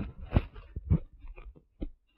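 A few short, soft knocks and rubs of handling noise on a phone and its plugged-in microphone. There is a brief dead-silent dropout just past halfway and another at the very end.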